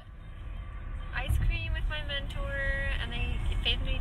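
Low, steady rumble of a car's engine and tyres heard from inside the cabin while driving, building over the first second; a woman talks over it.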